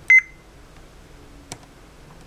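Ohm meter giving one very short high beep as its probes are put on the circuit to check for shorts, followed by a faint click about a second and a half later.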